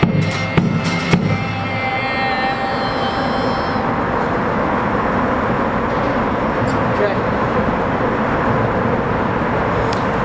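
The last strummed acoustic-guitar chords and drum hits of a song stop about a second in, and the final chord rings out and fades over the next few seconds. Steady city traffic noise follows.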